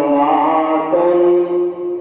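A man's voice in melodic, drawn-out chanted recitation, holding one long steady note through the second half.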